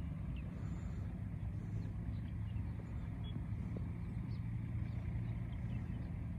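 Steady low hum of an idling engine, with a few faint high chirps over it.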